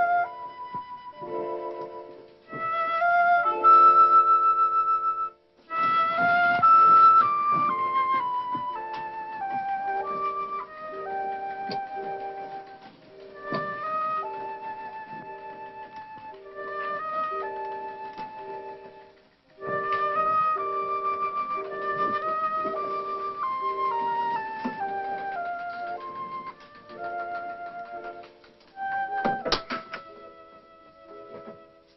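Orchestral film score music, a flute melody over held chords. The melody moves in phrases that step downward, with brief pauses about five and a half and nineteen and a half seconds in.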